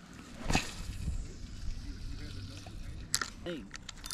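Faint handling noise of a spinning rod and reel while casting and retrieving, with a sharp click about half a second in and a few more clicks near the three-second mark.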